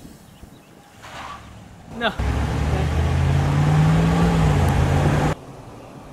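Ram 1500 Classic pickup truck's engine accelerating as the truck pulls away, its pitch rising a little and then easing off; it starts about two seconds in and cuts off suddenly near the end.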